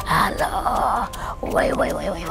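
A woman wailing and moaning in pain, her voice rising and falling in pitch, with a short break about halfway through.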